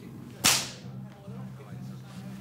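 A single sharp whip crack about half a second in, with a short fading swish after it.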